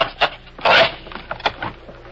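Sound effect of a wooden floorboard being pried up: a few sharp knocks, a short loud scrape of wood just under a second in, then more light knocks.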